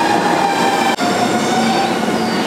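A Tobu Ryomo limited express train pulling into a station platform: a loud, steady rumble of the moving train with a steady high-pitched tone running over it, broken briefly about a second in.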